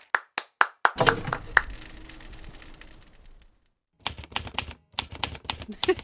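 A run of sharp, typewriter-like clicks: a few spaced ones in the first second, a louder knock about a second in that fades away, then a quick burst of clicks in the last two seconds.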